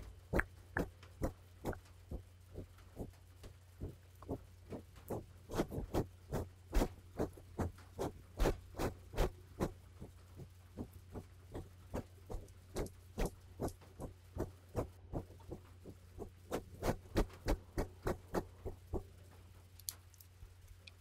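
Close-miked ASMR 'tuc tuc' triggers: a steady series of soft, sharp clicks, about two or three a second, louder in the middle, over a low steady hum.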